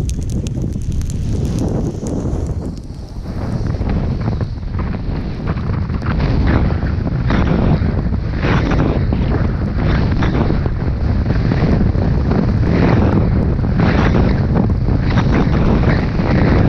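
Wind buffeting an action camera's microphone during a fast downhill run on snow, building up after the first few seconds. Over it, short scrapes of edges carving packed snow come about once a second in repeated turns.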